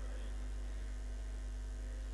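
Steady low electrical mains hum from the microphone and sound system, unchanging through a pause in the speech.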